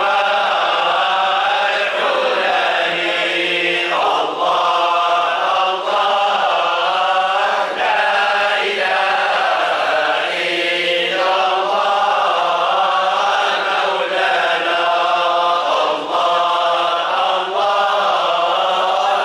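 A group of men chanting Sufi dhikr in unison, reading the verses from printed sheets, with short breaks between phrases about every two seconds.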